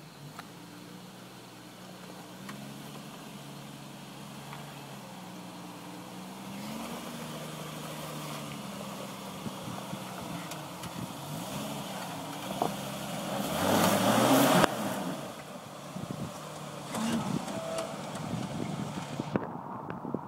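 Jeep Cherokee XJ engine labouring up a steep rutted dirt hill, its revs rising and falling as the driver works the throttle, building to its loudest about two-thirds through and then dropping off suddenly. Over the last few seconds the tyres crunch and crackle over loose rock and gravel.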